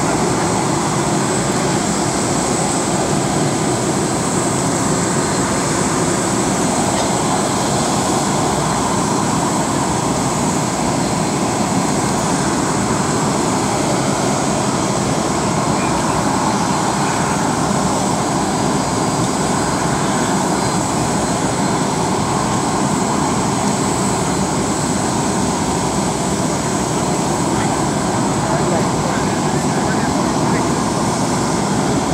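Steady roar of a parked jet airliner, with a thin high whine running through it, and a crowd's voices mixed in underneath.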